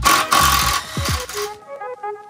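Electronic background music with deep, falling bass hits. For the first second and a half a cordless drill-driver runs, backing out the fasteners that hold the trim boards on an RV slide-out, then stops suddenly, leaving only the music.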